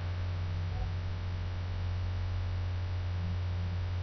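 Steady low electrical mains hum with a faint hiss above it.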